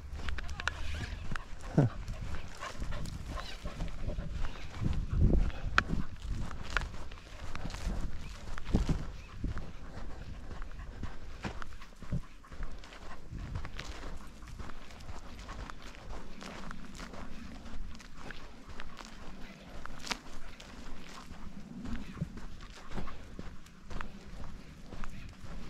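Footsteps walking steadily along a dry grassy path, in an uneven run of soft steps, with a heavier low rumble during the first half.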